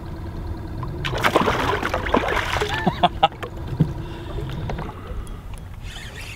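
Water splashing as a smallmouth bass is let go at the side of a boat, with the loudest splashing from about a second in for two seconds, over a steady low rumble.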